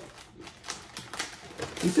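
Plastic cookie packaging crinkling and crackling as a hand reaches into an opened Oreo package: quick, irregular clicks.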